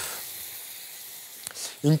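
Apple wedges sizzling as they go into hot amber dry caramel in a frying pan. The hiss starts suddenly and slowly fades.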